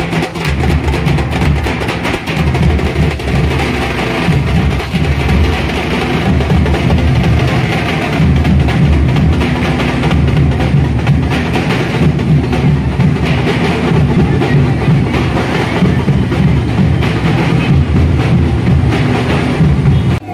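Loud, continuous drumming with music, many drum strokes packed into a steady driving rhythm.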